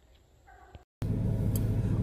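Quiet night woods with one faint short sound, then a moment of silence, then a steady low vehicle engine hum heard inside a truck cab.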